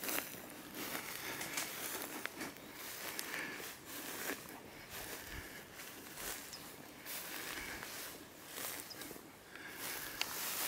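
Footsteps crunching through dry grass at a steady walking pace.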